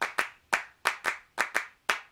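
Handclaps in a quick, steady rhythm, about four claps a second, starting off a music track.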